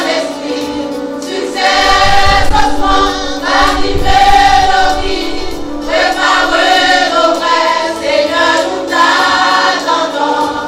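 Mixed church choir singing a gospel song in harmony, the voices swelling and falling phrase by phrase over a held low note. For a couple of seconds near the start a deep low rumble sits under the voices.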